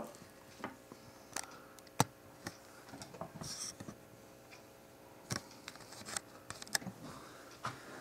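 Faint scattered clicks and taps of hands handling the camera and a metal vape mod, the sharpest about two seconds in, with a brief faint hiss a little after three seconds.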